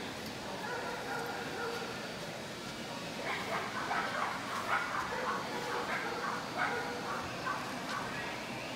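A dog barking in a quick run of short, high barks that starts about three seconds in and goes on for some four seconds, over the chatter of a busy hall.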